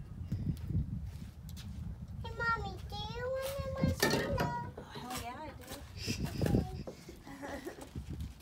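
A young child's high voice babbling and calling out without clear words, loudest in a long rising-and-falling sound about two seconds in, over a steady low rumble of wind on the microphone.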